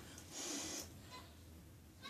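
A person blowing and sniffing through the nose to clear hair powder that went up it: one short breathy rush about half a second in, and another starting near the end.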